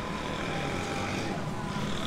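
Steady background din with no single sound standing out; a faint steady tone runs through the first part and then fades.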